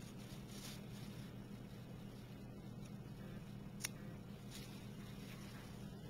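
Faint rustling as a water lily flower is pulled apart by hand on paper, over a steady low hum, with one sharp click a little before four seconds in.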